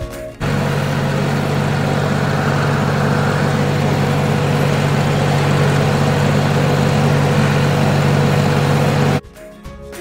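John Deere 5045E tractor's three-cylinder diesel engine running steadily under load while plowing, heard from the driver's seat as a loud, even drone. It cuts in about half a second in and stops shortly before the end.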